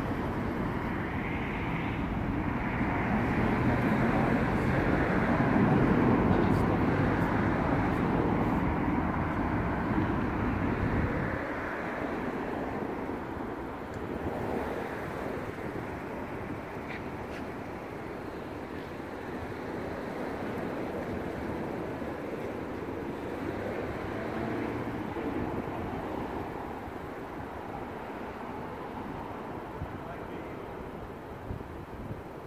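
Outdoor vehicle and traffic noise: a steady rumble that is heavy and low for the first eleven seconds, then drops away abruptly and leaves a lighter steady hum.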